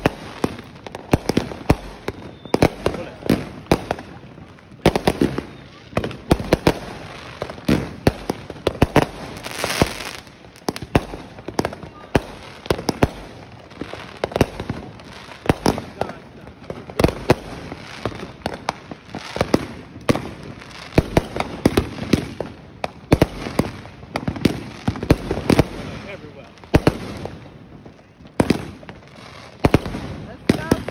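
Fireworks going off in quick succession: a dense, uneven run of sharp cracks and bangs from aerial bursts, several a second, with a brief hiss about ten seconds in.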